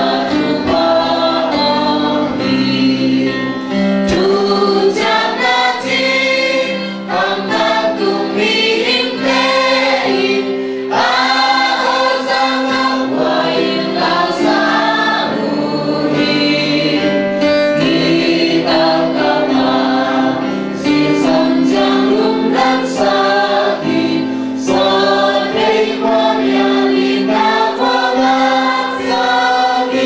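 A congregation singing a hymn together in held, continuous phrases.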